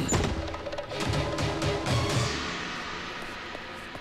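Dramatic film background music with drums: a sharp hit, a run of low beats, then a crash about two seconds in that slowly fades.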